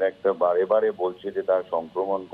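Only speech: a man talking continuously in Bengali over a phone line, sounding thin and narrow.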